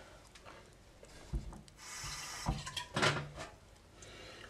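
A few soft knocks and a brief rustling scrape about halfway through, then a short low hum near the end.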